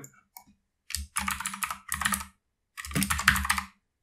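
Typing on a computer keyboard in two quick runs of keystrokes, the first about a second in and the second near the end.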